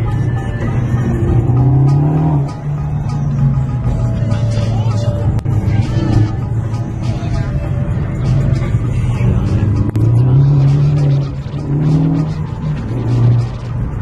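Ford Focus ST's turbocharged engine heard from inside the cabin, pulling under hard acceleration. Its pitch rises twice, about two seconds in and again around ten seconds in, with dips in between as the car drives a twisty road, and music plays along.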